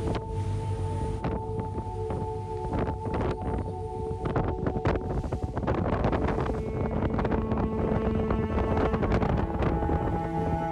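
Wind buffeting the microphone on a passenger ferry's open deck, over the boat's steady engine drone on a choppy sea.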